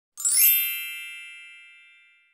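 A transition chime sound effect: one bright ding with a quick rising shimmer at its start, ringing out and fading over about two seconds.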